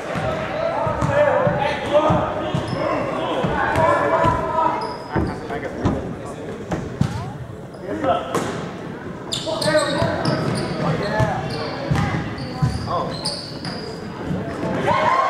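Basketball bouncing on a hardwood gym floor, with short high sneaker squeaks in the second half as play restarts. Scattered voices of players and spectators sound in the hall's echo.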